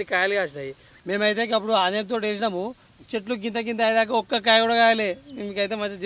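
A person's voice in long, drawn-out phrases with short pauses, over a steady high-pitched drone of insects.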